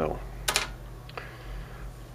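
The end of a spoken word, then a short sharp click about half a second in and a fainter one later, over a steady low hum.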